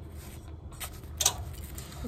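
A few light clicks and taps of a brass oil lamp being handled on a metal plate, the loudest a little past halfway, over a low steady room hum.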